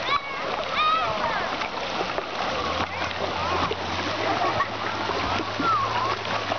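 Water splashing in a shallow wading pool, with many children's high voices calling and shouting across it.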